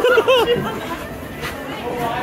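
Brief voice exclamations in the first half second, then steady background chatter and crowd noise.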